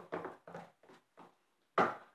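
Paper name slips being handled as a winner's card is drawn from a hat and opened: a few soft, short rustles, then a brief louder rustle near the end.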